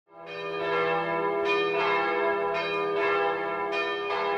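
A run of bell strikes, about five in four seconds, each ringing on and overlapping the next.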